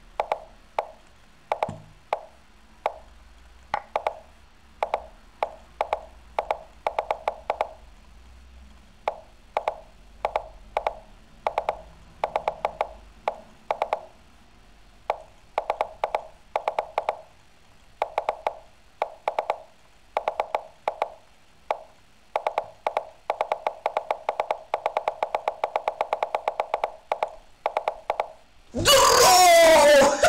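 Lichess chess-move sounds: a long series of short wooden clicks, one to three a second and then a fast near-continuous run, as pieces are shuffled in a drawn bullet endgame until the fifty-move rule ends the game. Loud laughter breaks in near the end.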